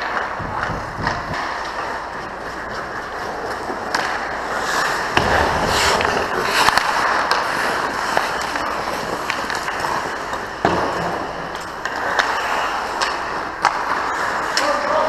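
Ice hockey skates scraping and carving across the ice close by, with scattered clacks and knocks of sticks and puck. A heavier thud about five seconds in and a sharp crack about three-quarters of the way through stand out.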